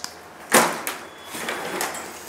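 Electrical wire being handled with a pair of wire cutters: a sharp click, a short loud scrape about half a second in, another click, then a longer, softer rustling scrape.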